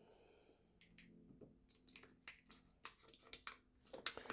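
Very faint: a few short, sharp clicks and crackles of a plastic tofu tray being squeezed and bent as soft tofu is pushed out into a plastic pitcher.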